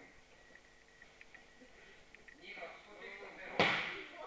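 A person thrown in practice lands on the tatami mats with one loud thud about three and a half seconds in.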